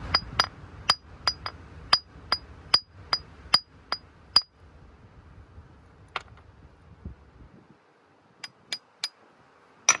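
Hammer striking a hard flint nodule to break it open: a quick run of about a dozen sharp, high ringing clinks in the first four seconds, one more in the middle, and three quick ones near the end.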